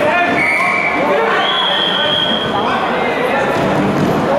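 Many voices of spectators and coaches shouting and calling over one another in a large hall during a wrestling bout. Two long, high, steady tones sound in the first half.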